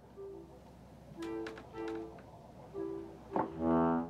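Small reed harmonium playing short, held two-note chords several times over, then a louder, fuller chord near the end, starting with a click.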